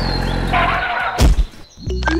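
Dubbed-in sound effects: a noisy, wavering animal-like cry, then a sharp hit about a second in, followed by a brief drop to quiet.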